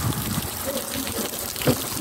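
Steady rush of heavy rain, with a short knock about one and a half seconds in.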